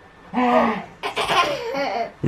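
Toddler laughing while being tickled: a short giggle about half a second in, then a longer stretch of high-pitched, breathy giggling from about a second in.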